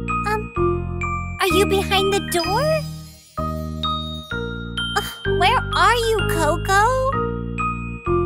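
Children's nursery-rhyme song: a backing of chiming, bell-like tones over a steady bass, with a voice singing a short line about a second and a half in and another about five and a half seconds in.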